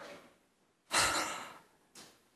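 A man's heavy sigh, breathed out close into a handheld microphone about a second in, after a faint breath at the start.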